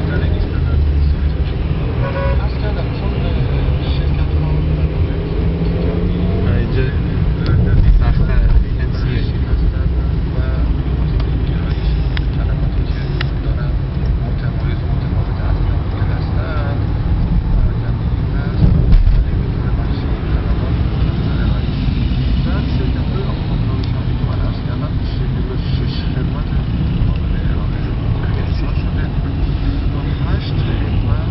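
Road noise from inside a moving car's cabin in heavy city traffic: a steady low rumble of engine and tyres, with surrounding buses and cars, swelling louder briefly about eight seconds in and again near nineteen seconds.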